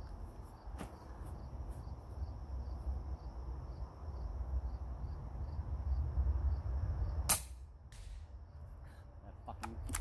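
A single shot from a Hatsan Flash .25-calibre PCP air rifle: one sharp crack about seven seconds in, over a steady low background rumble.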